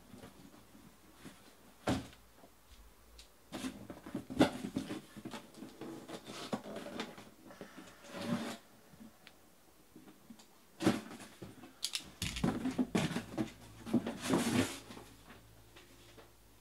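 Cardboard boxes of trading cards being handled and set down: scattered knocks, scrapes and rustles, busiest in the last few seconds.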